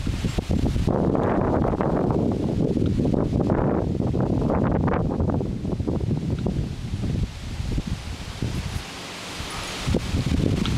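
Wind buffeting the camera microphone in gusts, a loud rumbling rush with no pitch that eases off briefly near the end.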